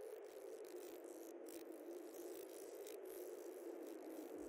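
A faint, low drone slowly sinking in pitch, with irregular crackling rattles over it.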